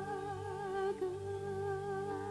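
A singer holding a long note with gentle vibrato, drawing out the end of a sung phrase, over a steady low instrumental drone.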